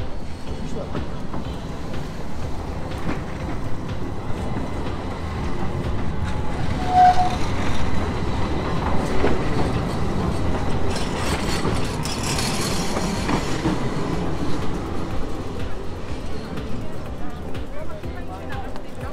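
A street tram passing close by on its rails, the rolling wheel-on-rail noise building about six seconds in and loudest around the middle before easing off.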